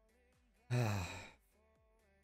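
A man's audible sigh, a breathy voice falling in pitch for about half a second, over faint background music.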